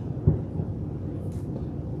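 Steady low background rumble, with one dull low thump shortly after the start.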